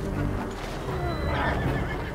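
A horse whinnies about a second in, a wavering call that falls in pitch, over the film's music score.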